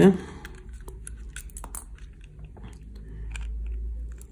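Scattered small plastic clicks and creaks as the two halves of an Apple MagSafe power adapter's plastic shell are pulled apart by hand.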